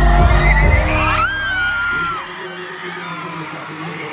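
Live concert sound: the song's heavy-bass beat and vocal play loud, then the bass cuts out about a second in and a high voice glides and holds briefly. The rest is quieter, with the crowd whooping and shouting over a thin backing.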